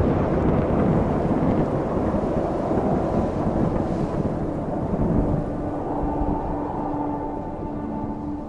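Cyclone storm: a loud, steady rush of wind and rain with a deep low rumble of thunder, easing slightly toward the end. A sustained musical drone comes in under it about six seconds in.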